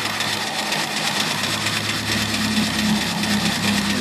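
A single-cylinder vertical steam engine with a 3-inch bore and 3-inch stroke running steadily, with a rapid even exhaust beat, a hiss of exhaust steam and a steady hum from its belt-driven alternator.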